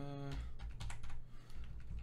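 Computer keyboard typing: a quick run of keystrokes as a search query is typed, with a brief hum of a voice at the very start.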